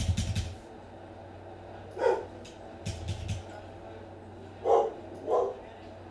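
A dog barks or yips briefly, once about two seconds in and twice near the end, with a quick run of clicks at the very start.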